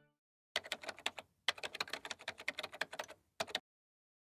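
Typing sound effect: quick, irregular keystroke clicks for about three seconds, with two brief pauses, stopping shortly before the end.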